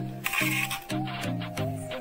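Background music: short, evenly spaced notes over a steady beat, with a brief bright crash about a quarter second in.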